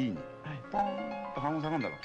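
A voice making drawn-out, wavering sounds over background music with held notes.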